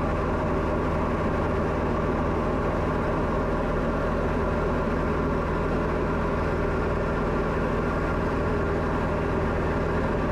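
Diamond DA40's piston engine and propeller droning steadily in flight, heard inside the cockpit: an even, low hum that holds the same pitch and loudness throughout.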